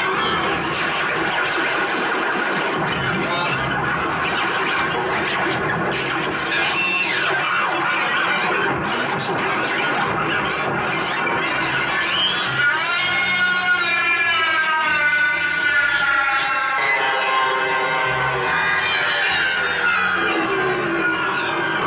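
Dense, loud experimental electronic music played live on a guitar synthesizer through a loop station: a thick noisy wash of layered tones. In the second half a squealing tone slides slowly down in pitch, followed near the end by another falling slide.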